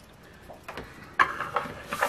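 A scratch-off lottery ticket being handled on a wooden tabletop: a few soft rustles and taps, the loudest a little after a second in.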